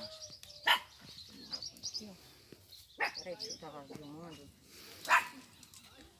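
A dog barking: three short barks, about a second in, at about three seconds and near five seconds, over faint chatter of voices.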